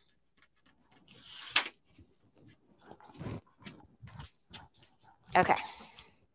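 An embroidery hoop being loosened and worked by hand to hoop tearaway stabilizer: a rustle of stabilizer paper ending in a sharp snap of the hoop about a second and a half in, then scattered light clicks and taps as the rings are handled.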